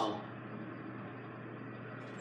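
Steady low hum and hiss inside a Fujitec traction elevator car as it travels down.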